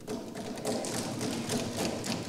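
Many lawmakers thumping their wooden desks in approval, a dense patter of knocks that builds in loudness.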